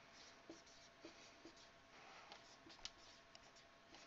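Dry-erase marker writing on a whiteboard: a few faint, short squeaks and taps as the words are written.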